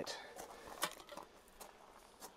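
A few faint footsteps as a person in a bee suit walks across garden ground: light separate steps, about two a second.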